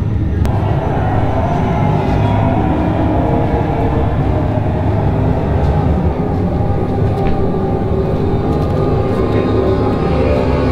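Loud, steady ambient drone: a deep rumble under layered sustained tones, with a brighter layer coming in about half a second in.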